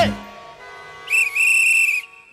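A single steady, shrill whistle blast, about a second long, starting about a second in as the sung music fades out.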